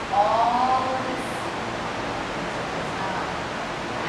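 Steady rushing room noise, with a brief voice in the first second whose pitch bends up and then eases down.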